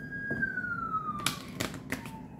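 A siren wailing: one slow glide in pitch that peaks near the start and then falls away. Near the end, three sharp clicks of a deck of tarot cards being handled.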